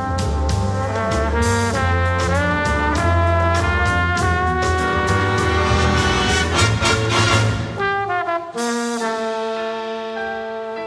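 Student jazz big band playing: trumpets, trombones and saxophones over bass and drums, with the horns bending their pitch together about two seconds in. Near the end the bass and drums drop out and the horns hold a sustained chord.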